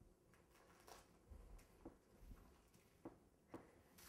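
Near silence with a few faint, short soft scrapes and taps as a long knife cuts straight down through stacked sponge cake layers.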